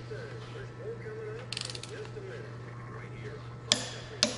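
Torque wrench tightening the rocker shaft hold-down nuts on a Detroit Diesel Series 60 cylinder head: a quick run of ratchet clicks about a second and a half in, then one sharp, loud click near the end as the nut is brought to torque.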